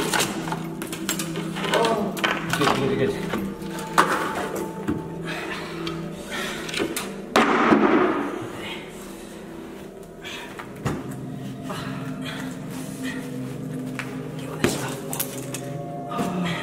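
Wall plaster being pulled and broken away from around a pipe: scattered knocks and cracks, and a louder crumbling rush of breaking plaster about seven seconds in. Low background music plays underneath.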